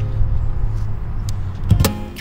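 A steady low rumble as the guitar's last strummed chord dies away, with a sharp knock near the end.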